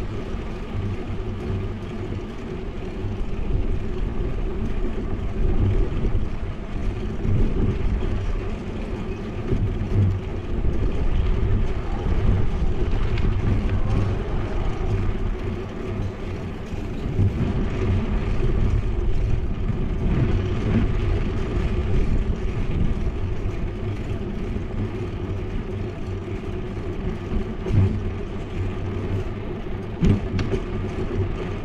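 Steady low rumble of wind and road noise on a bike-mounted action camera riding along a street, rising and falling a little with the ride.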